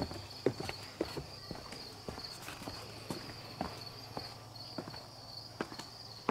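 Footsteps of the person filming, walking at an even pace, about two steps a second. A steady high-pitched trill runs underneath.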